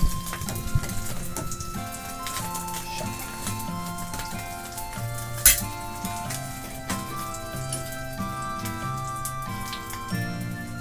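Background music with a slow melody, over a faint sizzle from a hot pan. Sharp clinks of utensils against a ceramic bowl, the loudest about five and a half seconds in.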